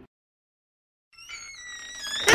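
Dead silence for about a second, then a faint high tone with higher overtones comes in, drifting slightly lower in pitch.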